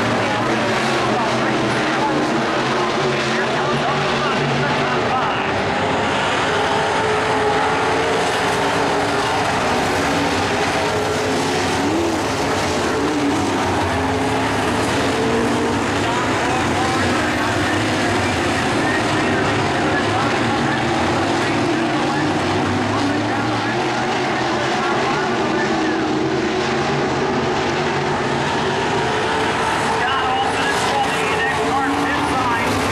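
A field of dirt-track modified race cars running at speed, their V8 engines at high revs with several cars' engine notes overlapping continuously as they circle the track.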